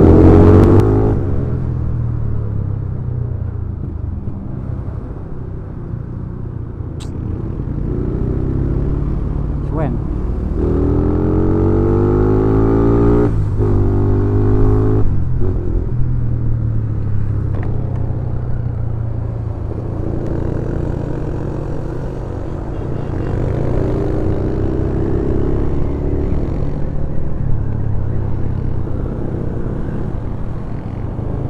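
Yamaha Scorpio's single-cylinder four-stroke engine running under way in traffic. About ten seconds in the revs climb, drop at a gear change and climb again until about fifteen seconds in. Another slower rise in revs comes later.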